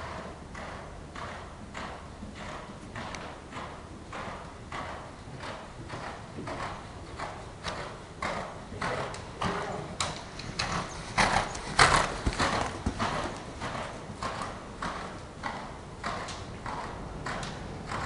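Hoofbeats of a young Canadian Warmblood mare under saddle on indoor arena dirt footing, in a steady rhythm of about two beats a second. They grow louder about two-thirds of the way through, then fade again.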